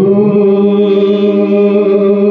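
Live Pahari folk music over a loudspeaker system: one long note held steady after sliding up into it.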